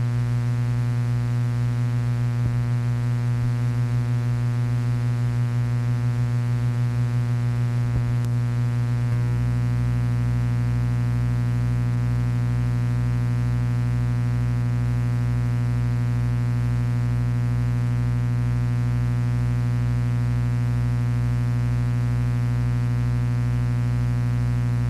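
Loud, steady electrical mains hum with a buzzy stack of overtones, carried on the blank video signal after the film ends. Its tone shifts slightly about nine seconds in.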